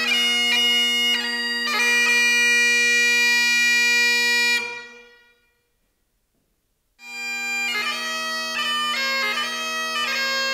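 Great Highland bagpipe playing, with steady drones under a fast chanter melody. The tune ends on a long held note, fades to about a second and a half of silence, then the pipes start again: drones first, with the chanter melody joining a moment later.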